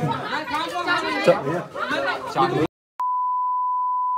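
Men's voices arguing. About two and a half seconds in, the audio cuts out completely, and a steady 1 kHz censor bleep starts soon after, masking abusive language in the quarrel.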